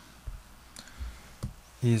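A few faint, irregular clicks and soft taps, about four in a second and a half, from working the controls of the whiteboard software. Speech starts again at the very end.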